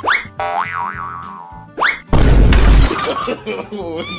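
Cartoon comedy sound effects added in editing: a quick rising whistle-like slide, a wobbling boing, a second rising slide, then a loud crash about two seconds in.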